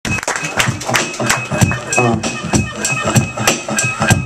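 Hip-hop beat played from a DJ's turntables, with sharp drum hits about three a second over a steady bed of music; a voice is briefly heard over it about two seconds in.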